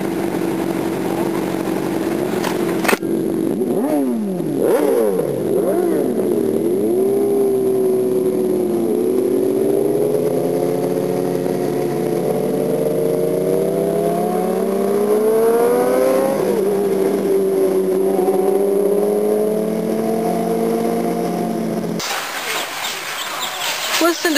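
Motorcycle engines idling, then one engine blips a few times and pulls away. Its pitch rises steadily through a gear, drops at a shift and settles to a steady cruise. The engine sound cuts off abruptly near the end.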